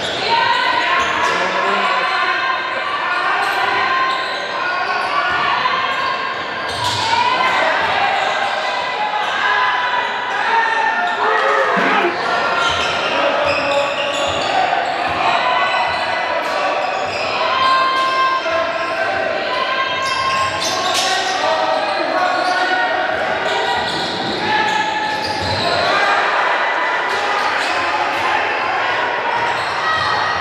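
Basketball game in play in a large gym: the ball bouncing on the hardwood court amid indistinct voices of players and spectators, all echoing in the hall.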